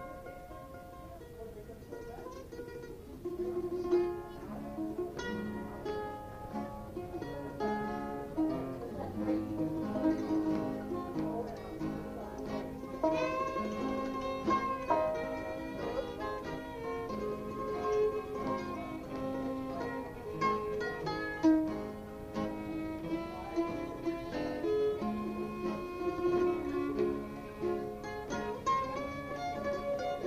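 An old-time fiddle tune played on fiddle with guitar backing. It starts softly and gets louder about three to four seconds in.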